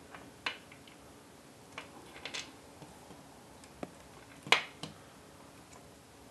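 Scattered sharp plastic clicks and taps as LiPo battery main charge-lead connectors are pushed together and handled. There are about six clicks, the loudest about four and a half seconds in.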